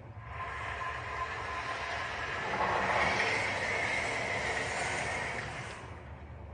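A rushing, hissing mechanical noise with a faint steady whine from the projected video's soundtrack. It starts abruptly, swells to its loudest about halfway through and fades away just before the end.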